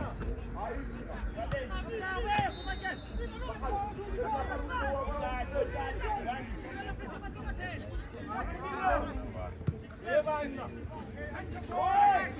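Indistinct chatter and talk among spectators on the sideline, with a single sharp knock near the end.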